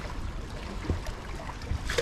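Sea water washing against jetty rocks, with wind rumbling on the microphone and a couple of faint clicks.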